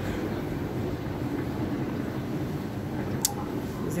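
Glass passenger lift's car arriving in its shaft after being called: a steady mechanical running hum, with one short sharp click about three seconds in.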